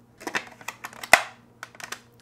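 Clear plastic lid of a Cuisinart mini food processor being handled and fitted onto its bowl: a run of light plastic clicks and knocks, the sharpest a little past halfway.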